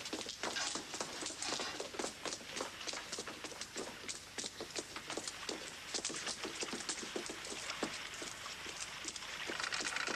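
Footsteps of several people hurrying, a quick irregular patter of steps with no break.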